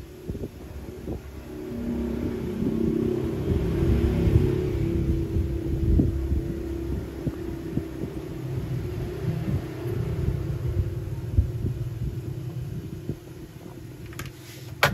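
A low background rumble with a faint held hum. It swells over the first few seconds and then holds steady, with scattered small clicks.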